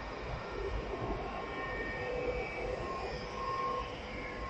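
Factory air-treatment system running: a steady mechanical drone from its exhaust fan and dust collector, with a faint whine held on a few steady notes.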